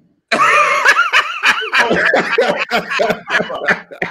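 Men laughing hard and helplessly. The burst starts suddenly about a third of a second in, after a moment of silence, and is loud, breaking into wavering, high-pitched peals.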